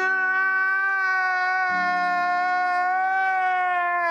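A man's long, drawn-out crying wail, one held pitch with a lower tone joining beneath it about halfway through.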